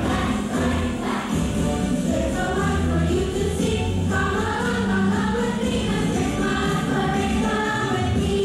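Children's choir singing with instrumental accompaniment, held sung notes over a steady bass line.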